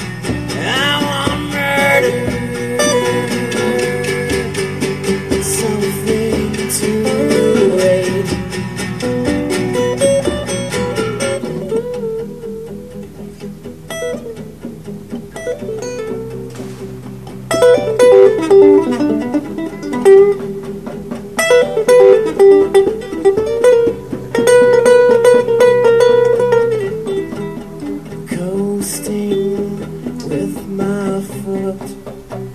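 Live acoustic guitar music with no singing: a lead acoustic guitar picking melodic lines over a second, rhythm guitar. The playing drops back for a few seconds in the middle, then the lead line comes in louder just past halfway.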